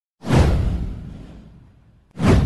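Whoosh sound effect for an animated video intro: a sudden swell a moment in, with a deep low rumble under it, fading away over about a second and a half.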